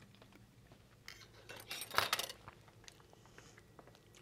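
Metal forks clinking and scraping lightly on small plates: a cluster of short clinks about a second in, loudest near the middle, then a few faint ticks.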